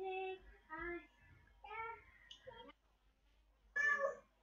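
A person's voice in several short, drawn-out phrases on held pitches, then a louder brief vocal sound near the end.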